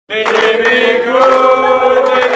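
Short sung intro jingle: voices holding sustained notes in a chant-like chord that starts abruptly, with higher notes joining about halfway through.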